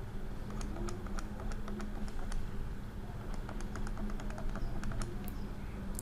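Light, irregular clicks and taps of a stylus on a drawing tablet as short dashed lines are drawn, over a faint low steady hum.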